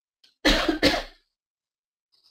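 A person clearing their throat with two short, loud coughs in quick succession, about half a second in.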